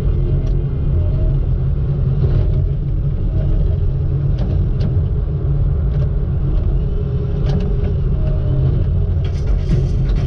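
Log loader's engine running with a steady low rumble as the grapple loads logs onto a trailer, with a few sharp knocks of logs and grapple in the middle.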